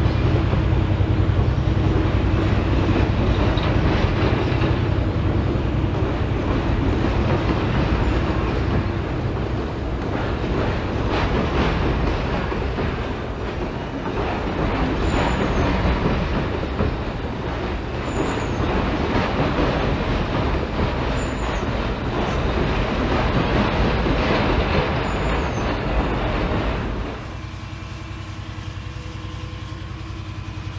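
HO scale model freight train rolling past, a steady rumble and clatter of wheels on the track. About 27 seconds in it gives way to a quieter, steady engine hum.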